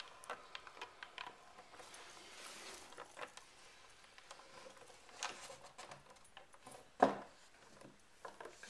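Faint, quiet handling sounds of cornflour-and-water goo (oobleck) being squeezed by hand and dripping from the fingers into a wooden tray, with a few soft clicks and one short, louder sound about seven seconds in.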